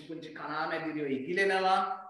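Speech: a person talking without a break.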